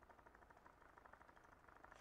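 Near silence, with a faint, fast, even pulsing from a handheld percussion massager running against a wrist.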